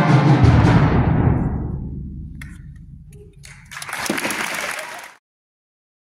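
Concert wind band with timpani sounding a loud chord that dies away over about three seconds in the hall's reverberation. About four seconds in comes a short burst of noise that cuts off suddenly into silence.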